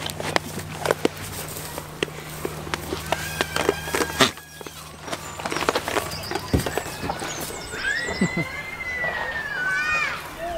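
Goats jostling on a wooden shelter and straw, with many scattered knocks and clicks of hooves and bodies on wood. Near the end a long, high-pitched goat bleat that rises and falls, and a person laughs.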